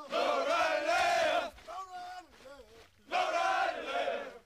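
A group of Marine recruits shouting together in unison, twice in long drawn-out calls, with a single voice calling out between the two shouts.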